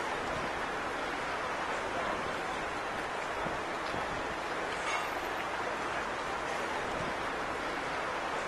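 Steady outdoor city street background noise, an even hiss with a faint click about five seconds in.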